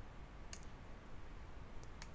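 Computer mouse button clicking: a quick pair of clicks about half a second in and a fainter click near the end, over a faint steady low hum.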